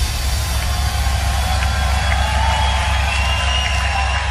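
A large festival crowd cheering and whooping over a held, deep bass tone from the sound system, the melody of the dance track having dropped away.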